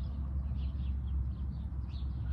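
Outdoor background: a steady low rumble with a few faint bird chirps.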